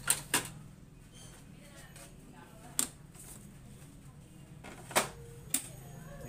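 Sharp plastic clicks and taps as hands handle an Epson L3210 inkjet printer's housing: two close together at the start, one near the middle and two more near the end, over a low steady hum.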